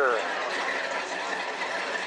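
Steady background chatter of voices and general outdoor noise, with no clear engine sound. The tail of a man's spoken phrase ends right at the start.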